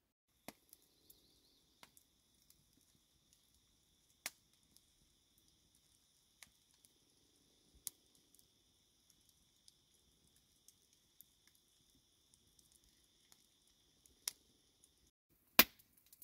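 Wood campfire crackling faintly, with scattered sharp pops over a thin, steady high-pitched hiss. A louder sharp click comes near the end.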